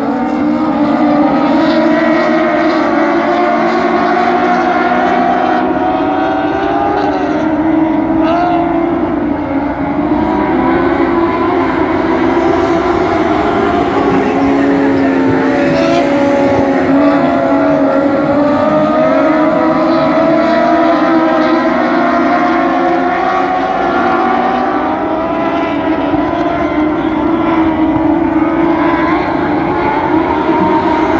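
A pack of dwarf race cars running their motorcycle engines hard around a dirt oval. Several engines overlap, their pitches rising and falling as the cars lift for the turns and accelerate down the straights.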